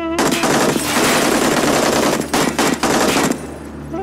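A long burst of rapid automatic gunfire lasting about three seconds. It falters briefly near the end before it stops.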